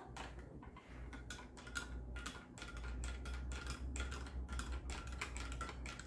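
Metal spoon stirring in a glass of hot milk, clinking lightly against the glass several times a second.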